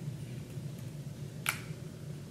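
A single sharp click about one and a half seconds in, over a steady low hum.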